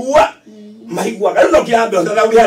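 A person's voice speaking, with a brief pause about half a second in.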